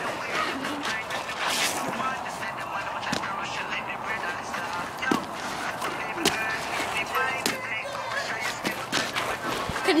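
Faint voices over a steady hiss, with a few short, sharp knocks or scrapes on icy ground.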